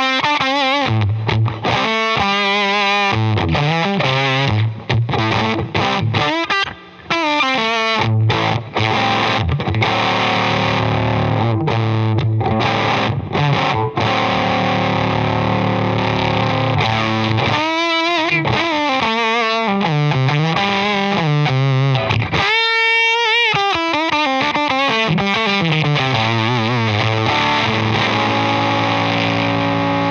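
Electric guitar (Grez Mendocino Jr) played through a Wrought Iron Effects H-1 germanium fuzz pedal, its oscillation control dialed back and its thrust (gain) turned down: distorted chords and single notes, warbling in pitch in a couple of places past the middle, ending on a sustained ringing chord.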